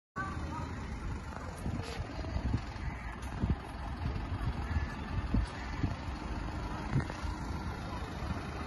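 Fuel delivery truck's engine running steadily with a low rumble while it refuels a car, with a few short knocks.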